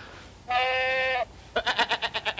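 A goat-like bleating cry: one steady held note lasting under a second, then a fast stuttering bleat of about ten pulses a second.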